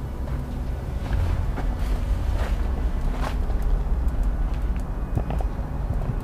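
Footsteps crunching on sand and rubble underfoot, a few separate steps, over a steady low rumble.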